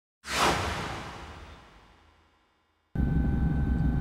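A whoosh sound effect for a broadcast title graphic: a sudden rushing swish that fades away over about a second and a half. Near the end, a steady low background rumble starts abruptly.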